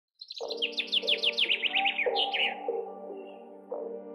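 A songbird singing a quick run of falling chirps that ends in a short flourish, stopping about two and a half seconds in. Under it, ambient music with held tones that runs on.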